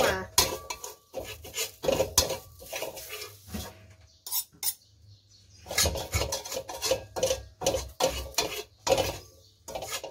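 Metal spatula scraping and clanking against a steel wok, stirring dry-roasting enoki mushrooms with no oil, so the strokes come with little sizzle. The strokes are irregular, with a brief pause about four to five seconds in.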